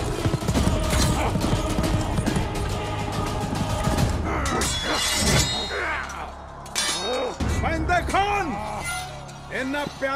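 Animated battle sound effects: a dense clatter of clashing weapons and impacts for about five seconds, thinning out after that. Men's shouts follow, over a background music score.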